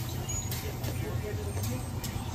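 Steady low hum of a deli's room tone with faint voices in the background, and a few soft crunches as a toasted white-bread sandwich is bitten into.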